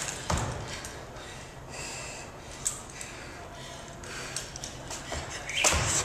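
Jump rope doing double-unders on a hardwood gym floor: a few sharp, uneven slaps and landings over a low room hum.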